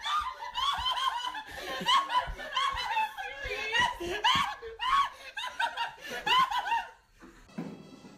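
High-pitched laughter in quick, repeated bursts, going on hard for about seven seconds and then dying away near the end.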